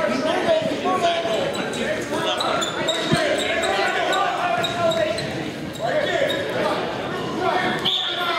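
Spectators and coaches shouting at the wrestlers in a large, echoing gym, overlapping unintelligible voices, with scattered short knocks and thuds.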